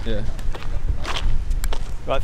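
Footsteps walking on sand over a steady low rumble, with a couple of sharp clicks near the end.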